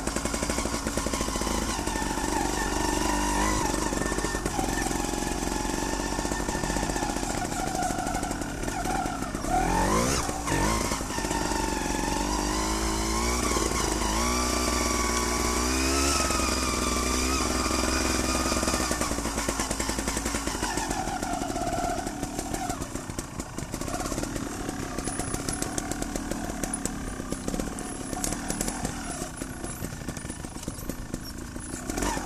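Trials motorcycle engine running while riding, its revs rising and falling with the throttle, with one quick rev up and back down about ten seconds in. It settles to a quieter, lower note for the last several seconds.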